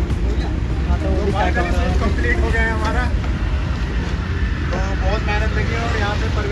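Steady low rumble of a vehicle engine running close by, with people's voices talking over it.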